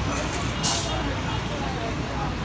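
Busy street food stall ambience: a steady low rumble under a crowd's background chatter, with one short, sharp hiss about two-thirds of a second in.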